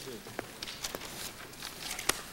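Paper being handled and pages turned at a table: soft rustling with several light clicks and taps.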